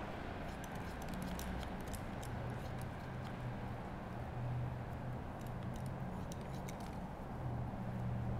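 Barber's shears snipping damp hair over a comb: a run of light, irregular metallic clicks.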